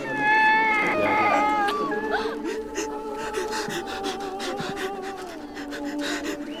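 People crying as they embrace in a tearful farewell: a loud, high-pitched wail for about the first two seconds, then quieter crying.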